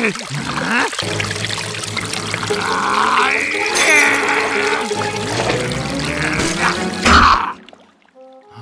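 Cartoon sound mix: water pouring and splashing from a small waterfall into a bath, with wordless vocal sounds from a character and music, all cutting off abruptly near the end.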